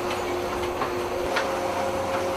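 Fairground ride machinery running: a steady mechanical noise with a held hum and a couple of faint clicks.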